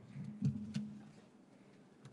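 Faint room noise with a low hum and two soft clicks in the first second, then near silence.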